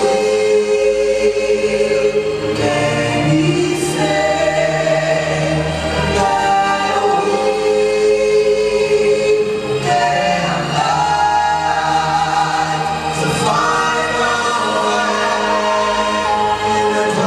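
Four-voice gospel vocal group, one man and three women, singing in close harmony through handheld microphones, holding long chords that change every second or two.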